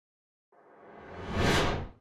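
Whoosh sound effect for a logo reveal: silent at first, then swelling from about half a second in to a loud peak with a deep rumble underneath, and cutting off sharply just before the end.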